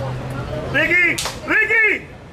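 A voice shouting two loud calls about half a second apart, each rising then falling in pitch, with a single sharp crack between them.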